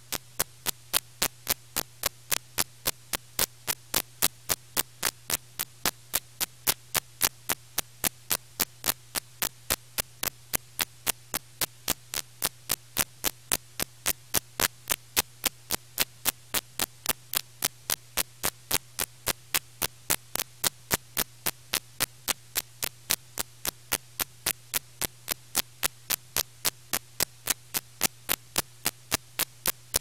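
Steady electrical hum with sharp static clicks at an even rate of about three a second: the noise of the audio track on a blank, unrecorded stretch of videotape.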